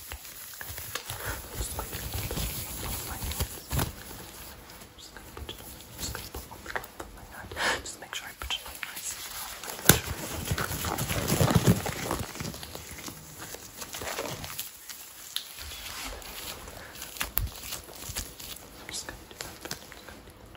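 A disposable examination glove being pulled onto a hand close to the microphone, with rubbery rustling and stretching. There is one sharp snap about halfway through and a louder stretch of rustling just after.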